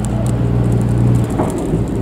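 A steady low engine hum, easing off after just over a second, with faint crackling from a burning stack of damp straw bales.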